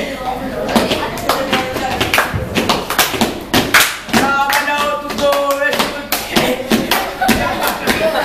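Repeated hand claps from a group of children, with voices singing along for a couple of seconds in the middle.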